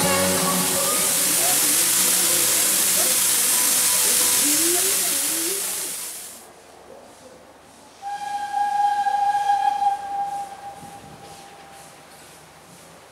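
Steam locomotive hissing loudly as it releases steam, with a band's music and singing faintly underneath; the hiss fades out about six seconds in. About two seconds later a steam whistle, plausibly the Polish 'Slask' class 0-8-0T tank engine's, sounds one steady note for nearly three seconds.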